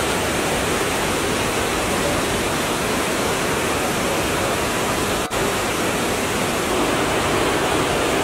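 Steady rush of a rocky forest stream, water running fast over boulders in a continuous even roar, with a very brief break about five seconds in.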